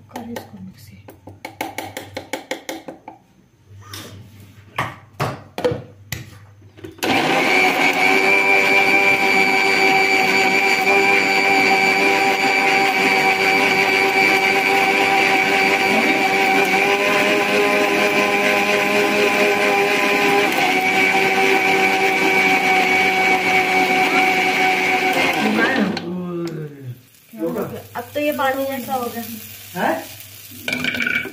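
Electric mixer grinder (mixie) churning malai (milk cream) with water to make butter. It starts suddenly about seven seconds in, runs steadily at full speed with a high whine for nearly twenty seconds, then cuts off a few seconds before the end. Before it starts there is a run of quick clicks.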